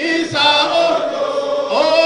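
A group of people singing or chanting together in long held notes, with the pitch changing only a few times.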